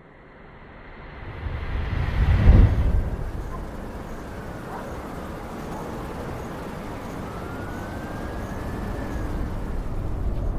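Sound-effect ambience between songs: a rushing, rumbling noise swells to a loud low boom about two and a half seconds in, then runs on steadily with a few faint gliding tones over it.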